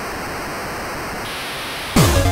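A steady white-noise hiss held as a break in an electronic chiptune track, with faint high tones dropping out partway through. The full track, with falling pitch sweeps and a beat, comes back in abruptly at the very end.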